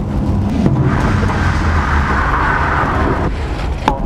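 Drift car's engine running under load with tyre noise as it slides, the tyres sounding from about a second in until a little past three seconds. Near the end the engine falls away: the car stalls mid-drift.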